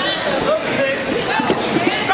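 Voices of coaches and spectators talking and calling out over one another in a reverberant gym hall. A sharp knock, the thud of an impact or a foot on the wooden floor, comes about one and a half seconds in.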